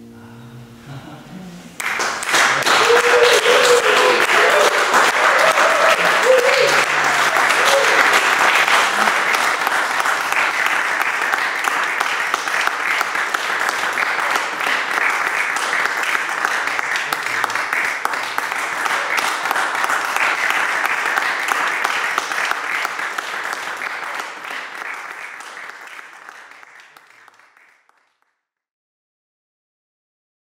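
Applause from a small group, breaking out suddenly about two seconds in as the last notes of the song die away, with whoops and cheers in the first several seconds. The clapping goes on steadily and fades out near the end.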